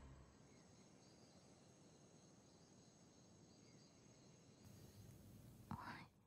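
Near silence: faint room tone, with a few soft faint sounds near the end.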